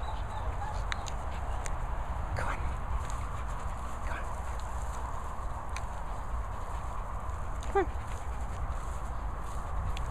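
Low, steady rumble of wind on the microphone, with a few brief dog sounds as dogs play on grass.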